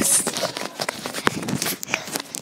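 Handling noise from a phone held close to the face while being carried along on the move: irregular taps, knocks and rustles against the microphone.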